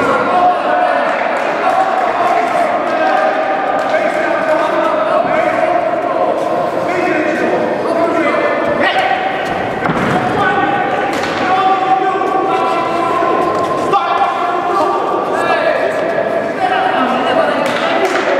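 Men's voices shouting from ringside during a boxing bout, continuous throughout, with a few sharp thuds of gloved punches landing in the middle.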